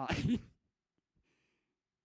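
A man's brief, breathy laugh into a handheld microphone, lasting about half a second.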